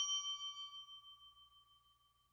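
A bell-like ding sound effect ringing out and fading with a slight wavering, gone by about a second in.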